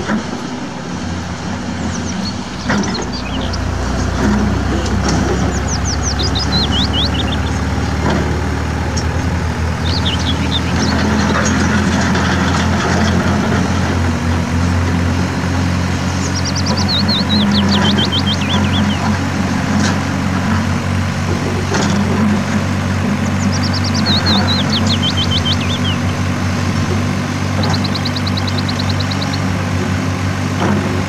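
Heavy diesel engines running steadily as a hydraulic excavator works, with truck engines idling alongside; the engine sound grows louder a few seconds in. Short runs of high, falling chirps come four times over the top.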